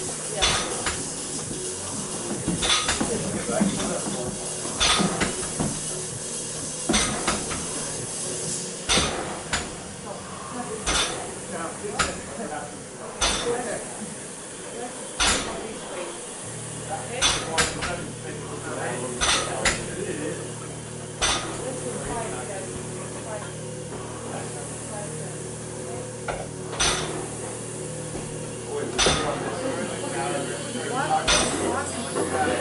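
Gym equipment giving sharp metal clinks and clanks about every two seconds, over steady room noise; a low steady hum comes in about halfway through.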